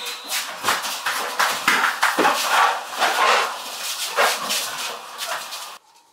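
A rapid, irregular series of loud, sharp animal calls that cuts off suddenly near the end.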